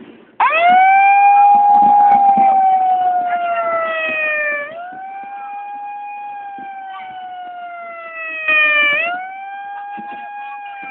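A siren wailing. Its pitch sweeps up sharply about half a second in, sinks slowly for about four seconds, then sweeps up again near five seconds and again near nine seconds. It is loudest over the first four seconds.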